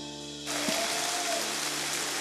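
Congregation applauding: the clapping starts suddenly about half a second in and continues steadily. Soft sustained background music plays under it.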